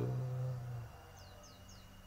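Three quick, faint chirps from a small cage bird, each falling in pitch, about a second in.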